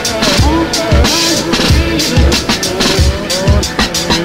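Instrumental hip-hop beat: a kick drum hitting about twice a second with hi-hats over it, under a pitched sample that slides up and down in pitch.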